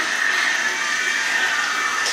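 A steady hiss with a faint high whine in it, running evenly without a break.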